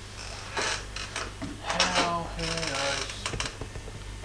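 A person's voice, unclear and with no words made out, over a few short clicks and a steady low hum.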